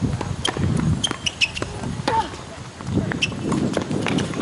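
Tennis play on outdoor hard courts: a run of sharp ball strikes and bounces in quick succession, with a brief squeak about two seconds in and faint voices underneath.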